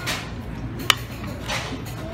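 Metal serving tongs clinking once against a buffet tray: a single sharp, ringing tick about a second in, with softer scraping before and after over a steady low hum.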